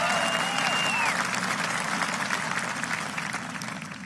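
Audience applauding, with a few cheering shouts in the first second, easing slightly near the end.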